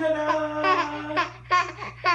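Baby laughing and squealing with excitement: one long held squeal for the first second or so, then two short squeals.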